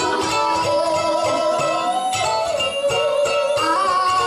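Live band playing a song on stage, a sustained melody line moving slowly over a steady beat.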